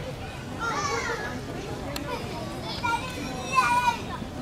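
Young girls chatting in high voices, a short phrase about a second in and more talk near the end, over a steady background hum of outdoor noise.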